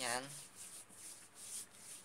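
Hands rubbing lotion into skin: a soft, faint rubbing in even strokes, about three a second.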